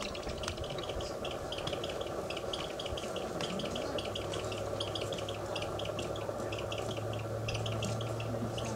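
Outdoor ambience with a rapid, high chirping that runs on in clusters, over a steady background noise; a low steady hum joins about halfway through.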